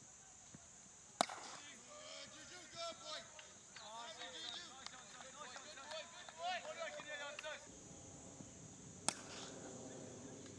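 A cricket bat strikes the ball with a sharp crack about a second in. Players shout for several seconds after it, and another sharp knock comes near the end.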